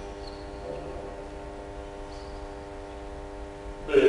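Church music: one chord held steadily on an organ-like keyboard instrument, with no change in pitch. A much louder passage of music comes in abruptly right at the end.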